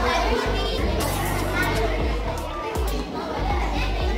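Indistinct chatter of many children talking at once, over a steady low rumble.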